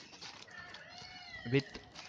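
One drawn-out animal cry, rising then falling in pitch over about a second, in the background.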